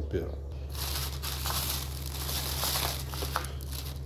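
Crinkling and rustling of a plastic bag as jars of jam and canned fruit are handled and taken out, with small ticks in it.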